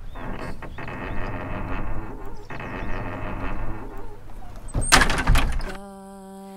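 An old wooden door creaking on its hinges in two long creaks, then a loud bang of the door about five seconds in. A steady droning note starts just before the end.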